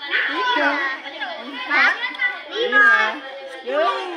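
Several children talking and calling out at once, overlapping high-pitched voices with no clear words.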